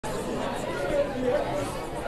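Faint background chatter of several people talking at once.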